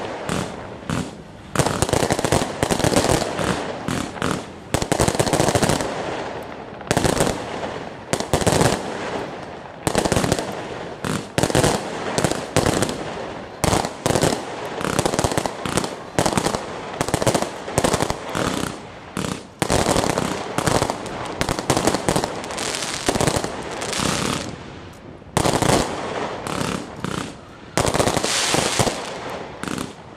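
Aerial fireworks bursting in rapid, irregular volleys of sharp bangs and crackles, going on without a break.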